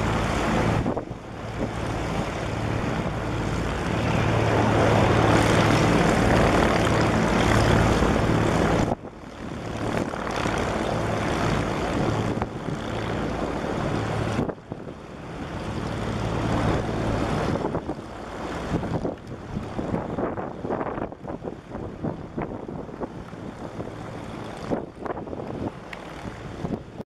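AgustaWestland A109S Grand helicopter flying away: a steady rotor and turbine drone with a low hum, growing fainter as it recedes. The level drops suddenly about nine and again about fourteen seconds in.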